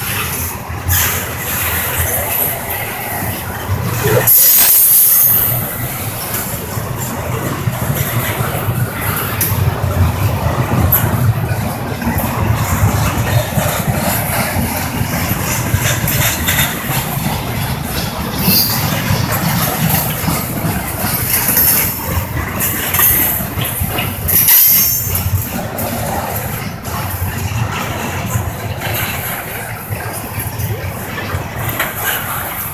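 Double-stack intermodal freight cars rolling past: a steady rumble of steel wheels on rail. High-pitched wheel squeal cuts in briefly about four seconds in and again about twenty-five seconds in.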